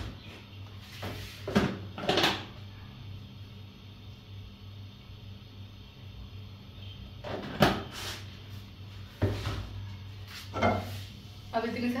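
Kitchen handling sounds at a gas stove: a few sharp knocks and clatters of cookware and utensils, spaced a few seconds apart, two near the start and a cluster in the second half, the loudest just past the middle. A steady low hum runs underneath.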